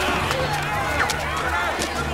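Commotion of shouting voices with running footsteps and scattered sharp knocks, over a steady low hum.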